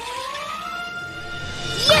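Cartoon soundtrack: a single whistle-like tone glides slowly upward and then holds one steady note, a comic sound effect under light music.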